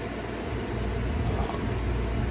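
Steady low hum and hiss of room background noise, like an air conditioner or fan running.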